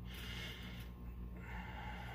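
Two soft breaths through the nose, each a little under a second, over a steady low hum.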